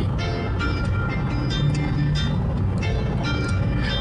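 Recorded piano accompaniment playing a short instrumental gap between sung lines, over the steady low road and engine noise of a moving car's cabin.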